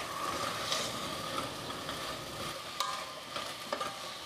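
Chopped okra sizzling in a pot on the stove as it is stirred, with a couple of light knocks of the spoon against the pot in the second half.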